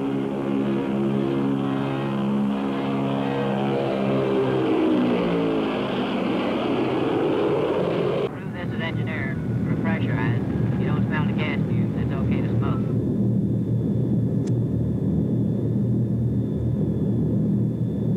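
A Convair B-36 Peacemaker's six radial piston engines and propellers passing by with a deep, multi-toned drone that falls in pitch as it goes past. About eight seconds in it cuts to a steady engine drone heard inside the bomber, with a crewman's voice over it for a few seconds.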